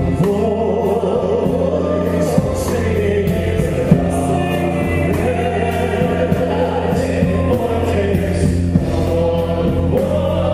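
Large men's choir singing a slow song over instrumental backing, with sustained low notes and a light, regular percussion beat.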